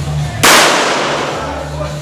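A single pistol shot about half a second in: a sharp crack that dies away over about a second.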